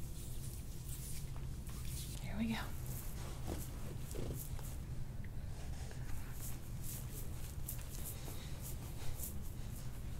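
Hands and forearm pressing and sliding over an oiled bare back during soft-tissue work: faint skin friction with many small soft clicks. There is a brief vocal sound about two and a half seconds in.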